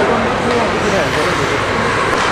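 Many overlapping voices calling out over a steady, echoing din in an indoor ice rink during a youth hockey game.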